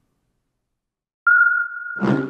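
Silence, then just past a second in a loud, steady, high electronic tone starts abruptly: the opening of an animated logo's sound sting.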